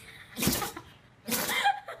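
Small white terrier sneezing twice, about half a second in and again about a second later, each sneeze a short, sharp burst.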